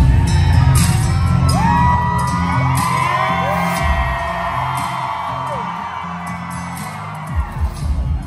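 Loud concert music over the PA with a pulsing heavy bass beat that gradually fades, while the crowd cheers and whoops. There are a couple of deep thumps near the end.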